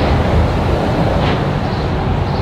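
Steady, loud low rumble of outdoor city street noise.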